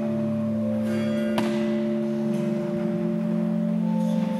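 Church organ playing slow, sustained chords, the notes held and changing gradually. A single sharp click is heard about a second and a half in.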